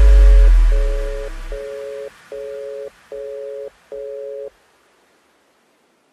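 Final bars of a bass-boosted electronic dance remix: a deep sub-bass note dies away in the first second and a half under a two-note synth tone that beeps on and off about six times, like a phone busy signal, and stops about four and a half seconds in.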